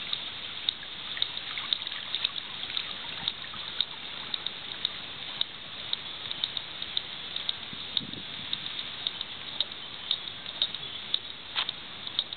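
Steady trickling-water hiss with many short, irregular light clicks and taps scattered through it.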